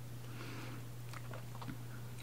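Soft close-up chewing of a mouthful of rice pilaf (plov), with a few faint mouth clicks in the second half, over a steady low hum.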